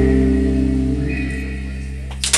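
A live rock band's last chord ringing out, its held notes slowly fading away.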